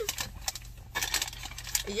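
Eating sounds: a run of small, sharp clicks and smacks, scattered irregularly.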